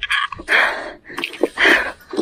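A person breathing hard near the microphone: several quick, noisy breaths in a row, like excited panting.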